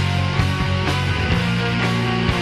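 Rock band playing an instrumental passage, with sustained pitched guitar or keyboard notes over bass and drum hits about every half second.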